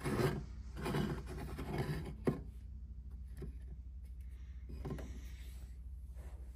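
A heavy model railway building rubbing and sliding across a wooden tabletop, with one sharp knock about two seconds in. After that come only a few faint clicks.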